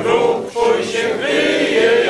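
A group of men and women singing a song together in unison, holding long notes, with a short breath break about halfway through.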